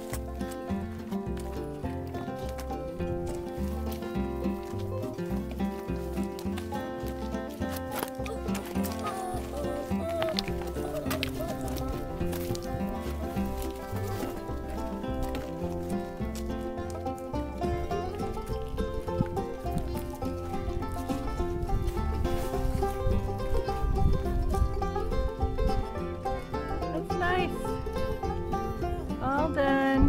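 Background music: a song with a steady beat.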